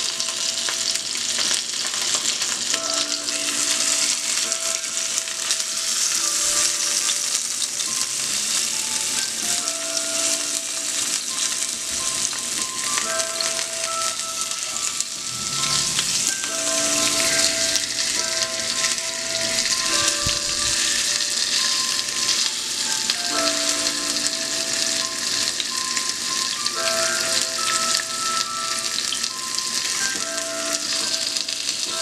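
Crusted fish fillet sizzling steadily as it sears in hot oil in a frying pan, with metal tongs now and then scraping and shifting it in the pan.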